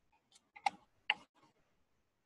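Two short, sharp clicks about half a second apart, over near silence.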